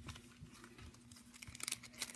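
Faint rustling and light ticks of gloved hands handling trading cards and a card pack wrapper, growing into crinkling near the end.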